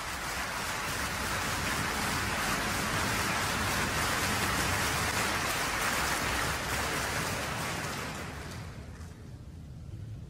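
Concert hall audience applauding for an encore, swelling to a peak and then dying away from about eight seconds in.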